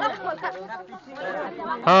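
Several people talking, overlapping chatter of voices; one voice comes in loud near the end.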